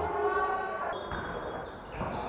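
The music beat cuts off at the start, leaving the faint sound of a basketball game in a gym, with a ball bouncing on the court.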